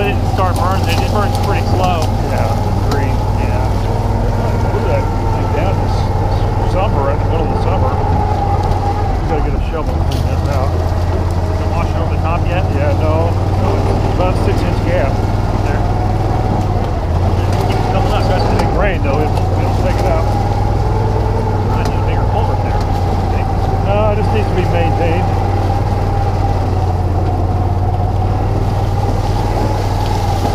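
Engine of a small utility vehicle (a 'gator'-type side-by-side) running steadily while driving along a rough trail, with occasional brief knocks and rattles from the ride.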